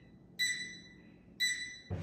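UMAY walking pad treadmill beeping its start countdown: two high electronic beeps about a second apart, each fading briefly, as the display counts down before the belt starts at low speed.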